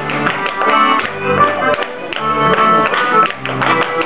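An accordion playing a dance tune in held chords, with clog dancers' wooden-soled clogs tapping out quick rhythmic steps on a wooden floor.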